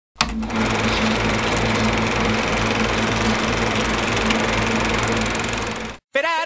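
Film projector running: a steady mechanical clatter and whirr over a low hum. It starts with a click just after the start and cuts off suddenly at the end.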